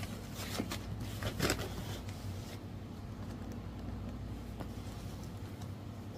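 A few faint knocks and rustles of a cardboard box of wooden pieces being handled in the first two seconds, then only a steady low hum.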